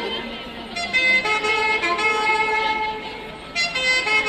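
Live folk music accompanying an Andean dance, with a long horn-like note held for about two seconds in the middle. It fades briefly just before a new phrase starts near the end.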